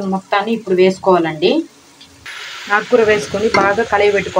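A person talking over the pan, and about two seconds in a steady sizzle sets in as amaranth leaves (thotakura) fry and are stirred in the hot pan, with the talking carrying on over it.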